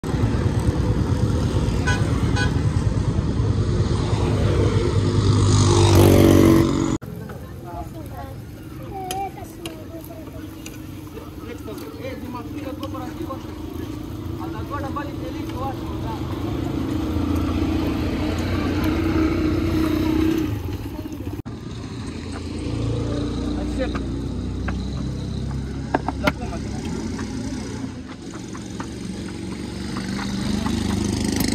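Road traffic: cars, motorbikes and auto-rickshaws running past, loudest about six seconds in, cut off suddenly about seven seconds in. Quieter outdoor ambience follows, with voices and a steady hum.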